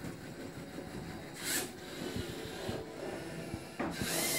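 A small robot's electric motors and gears whirring faintly as it drives and turns, with light clicks. A short hiss comes about a second and a half in.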